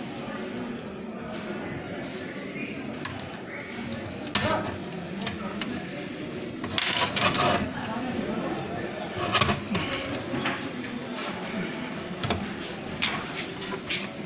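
Indistinct voices talking, with a few sharp clicks or clinks scattered through; the loudest click is a little over four seconds in.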